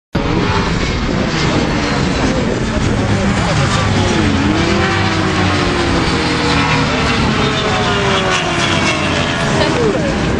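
Sport motorcycle engines at high revs as the bikes lap a race circuit, their pitch rising and falling again and again with the throttle and gear changes.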